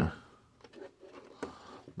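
Faint clicks and rustles of a hand handling small plastic LEGO pieces in a cardboard advent calendar, with one sharper click about a second and a half in.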